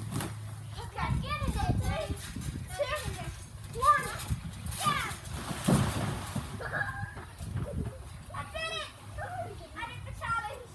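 Children's high-pitched shouts and squeals while they bounce on a trampoline, with low thuds from the trampoline mat.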